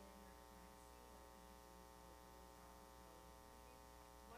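Near silence: a steady electrical mains hum.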